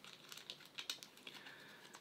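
Faint handling sounds of a webbing strap and its tension lock being worked in the hands: soft rustling with a scatter of light clicks.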